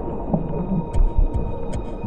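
A low, droning hum from the trailer's soundtrack, with two low thuds in quick succession about a second in and a few faint ticks.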